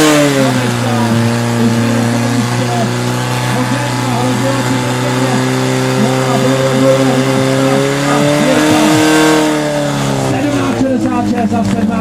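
A portable fire pump's engine running at high revs under load while it drives water through the attack hoses. Its pitch holds steady, lifts slightly, then falls about ten seconds in as it is throttled back.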